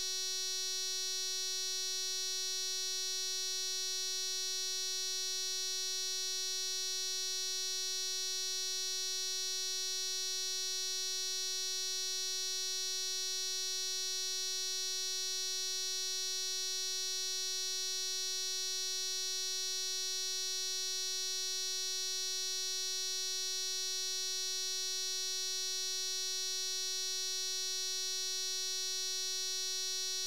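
A steady electronic tone held at one pitch, buzzy with many overtones, with no change in level or pitch.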